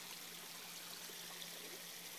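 Faint, steady trickle of water running into a garden pond.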